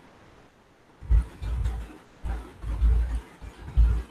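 Computer keyboard typing: an irregular run of muffled keystroke thuds with faint clicks, starting about a second in.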